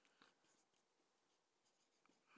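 Near silence with a few faint strokes of a marker pen writing on a whiteboard.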